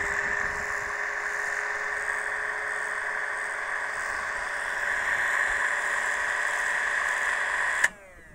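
APQS Turbo Bobbin Winder's electric motor running steadily, spinning a bobbin as thread winds onto it, with a steady whine. It cuts off suddenly near the end when switched off by hand before the bobbin is full.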